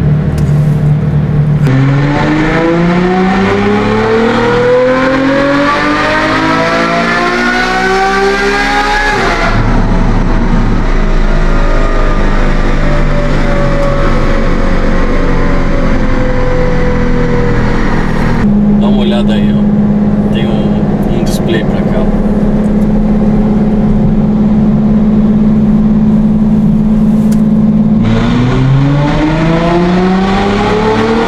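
Ferrari F12's 6.3-litre naturally aspirated F140 V12, breathing through an aftermarket exhaust, running on a chassis dynamometer. A power run climbs steeply in pitch for about seven seconds, then winds down over several seconds and holds a steady drone for about ten seconds. Near the end another run begins, rising again.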